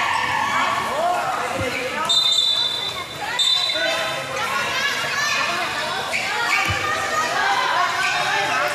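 Basketball game sounds on a concrete court: a basketball being dribbled, with players and onlookers calling out over one another. Two short high-pitched tones sound about two and three and a half seconds in.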